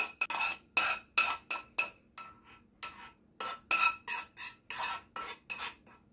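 A metal spoon scraping and clinking against a nonstick frying pan as sautéed onion is scooped out of it: a quick, irregular run of about fifteen short scrapes, each with a slight metallic ring.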